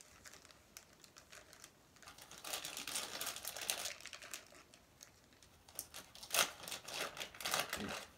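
Plastic bait packaging crinkling and crackling as it is handled and opened, in two bouts of rustling with sharp crackles, one a couple of seconds in and a louder one near the end.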